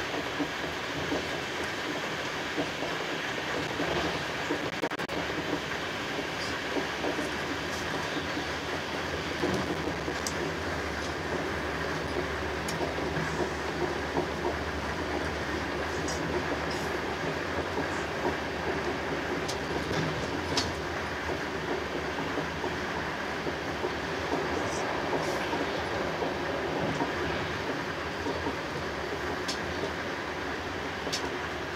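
Passenger coach running at speed, heard from inside: a steady rumble of wheels on the rails, with scattered light clicks.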